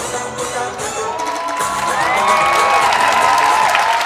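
Dance music with percussion ends about a second and a half in, and an audience takes over, cheering with high whoops and shouts that grow louder.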